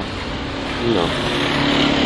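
City street traffic noise, a steady hiss of passing vehicles, with a drawn-out spoken 'no' about a second in.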